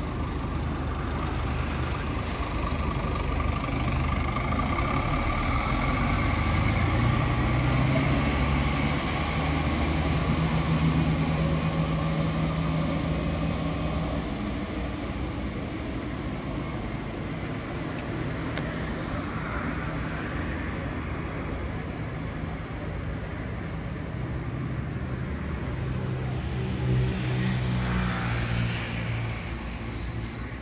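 Heavy bus engines and road traffic: one engine climbs in pitch about six seconds in, runs steadily for several seconds and fades away, and another grows louder near the end, over a steady traffic rumble.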